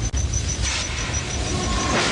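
Subway train running through a tunnel: a steady low rumble, with a hissing rush of noise that builds from about half a second in.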